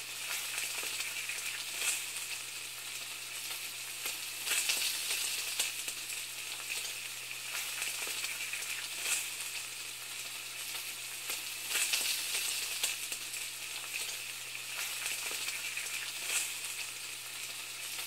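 Steady sizzling hiss of food frying, broken by irregular louder crackles every few seconds, over a low steady hum.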